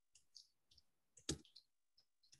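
A few faint, scattered keystroke clicks on a computer keyboard, the clearest a little over a second in, in otherwise near silence.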